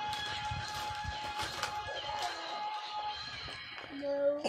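Wrapping paper crinkling and tearing as presents are unwrapped, in short irregular rustles. Faint background music holds steady notes underneath until about three seconds in.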